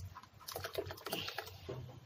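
A steel spoon stirring curry in a pot, giving irregular light clicks and taps as it knocks against the pot, over a low steady hum.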